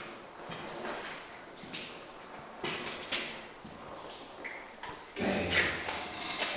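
Scattered scuffing footsteps and grit crunching on a debris-covered concrete floor, with an echo from the bare room. Near the end a louder, lower rumble starts.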